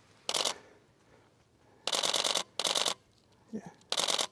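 Canon DSLR shutter firing in rapid continuous bursts: a short burst about a third of a second in, then two longer bursts about two seconds in, each a quick run of mechanical clicks.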